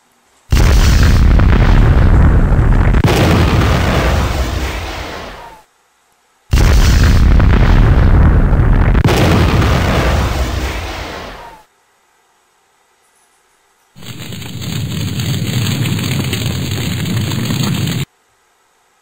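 Two explosion sound effects, one after the other, each a sudden loud blast that fades away over about five seconds. About two seconds after the second, a steady loud noise starts and runs on.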